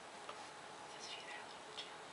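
Faint ticks and light scratches of a white gel pen's tip drawing lines across a fingernail painted black, over a low hiss.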